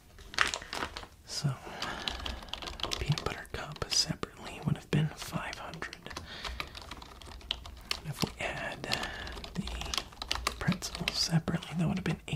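Typing on a computer keyboard: quick, irregular key clicks as a purchase is entered into a shop's checkout system.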